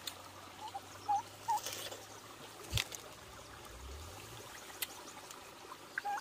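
Faint, steady trickle of a shallow stream running over stones, with three short chirps in the first second and a half and a couple of sharp clicks later on.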